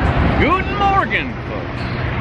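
Road traffic, with a coach bus driving past close by over a steady low rumble. About half a second in there is a brief voice sound, under a second long, whose pitch rises and then falls.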